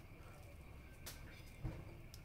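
Quiet handling sounds from seasoning raw beef on a plastic cutting board: a light tick about halfway through and a short, soft low thump near the end, over faint room tone.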